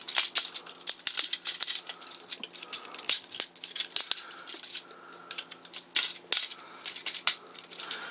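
Plastic parts of a chrome-plated Tomica Drive Head transforming robot toy clicking and rattling as hands work its leg joints: a quick, irregular run of small clicks and clacks.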